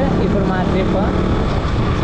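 KTM RC single-cylinder motorcycle engine running steadily at cruising speed, with wind and road rumble, heard from the rider's seat.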